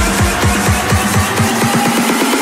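Electronic background music with a steady, fast kick-drum beat, about four beats a second, over a held bass note; the bass and beat drop out just before the end.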